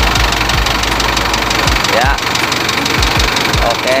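Toyota automatic forklift's diesel engine running steadily with an even, pulsing beat, freshly serviced with new oil, oil filter and fuel filter.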